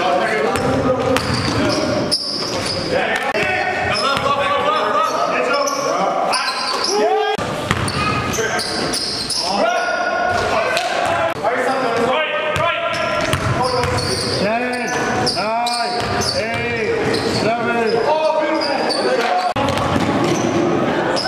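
Basketballs bouncing on a hardwood gym floor, with indistinct voices and shouts echoing in the large hall.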